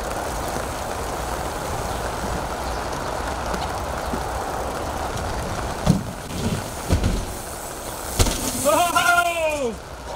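Steady outdoor noise, then a few knocks of the mountain bike's tyres and the rider's feet on the plywood ramp. Near the end comes a short shout from the rider that rises and falls in pitch as he rolls in.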